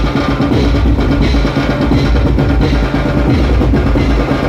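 Dhumal band music played loud through a truck-mounted speaker rig: a heavy, driving drum beat with a strong bass thump over the band's melody.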